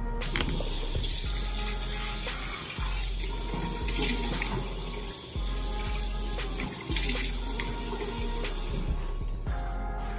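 Water running steadily from a tap, starting just after the start and cutting off about a second before the end, over background music.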